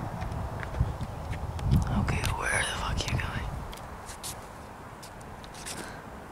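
Wind noise on the microphone, stronger in the first half and easing off after about three and a half seconds, with scattered small clicks and a brief indistinct voice about two seconds in.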